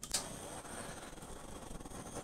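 A small handheld electric blower, switched on with a click, then running steadily: an even hiss with a faint high whine.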